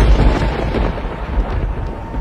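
Thunder-like rumble that breaks in suddenly, heavy in the bass, and dies away over a couple of seconds, over a steady background-music drone.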